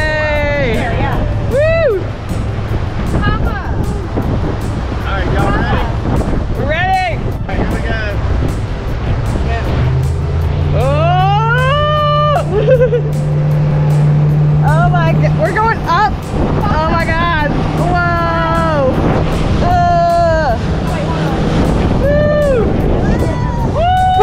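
Outboard motor of a deck boat running under way, a steady low drone with water and wind noise, growing louder about ten seconds in, with voices calling out over it.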